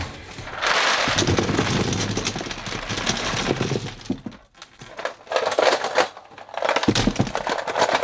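Ice cubes clattering as they are tipped and shaken out of a plastic tub into a polystyrene box. They come in several spells, with a brief pause about halfway through.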